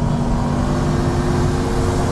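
Road and engine noise inside a moving car's cabin: a steady low rumble with a few faint, steady tones held over it.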